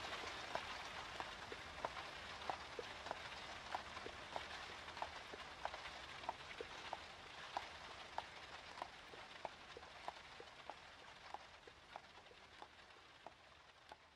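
Faint outro ambience of a lo-fi hip-hop track: a steady crackling hiss with soft ticks about every two-thirds of a second, slowly fading out.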